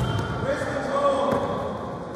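Voices calling out in a large, echoing gym, with dull thuds of wrestlers' bodies hitting the mat as they go down in a takedown.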